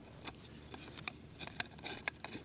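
Faint handling noise from a camping cot: a few light clicks and rustles as hands take hold of the fabric-covered side rail, with most of the clicks in the second half.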